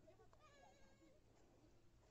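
Near silence: a single faint, distant pitched call lasting about half a second, over a steady low hum.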